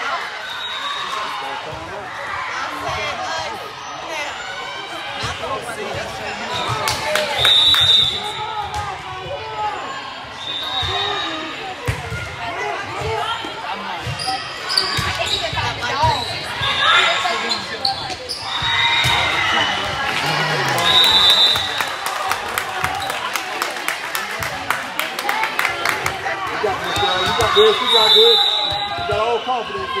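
A volleyball being hit and bouncing on an indoor court during a rally, amid voices calling and shouting in an echoing sports hall, with several short high-pitched tones.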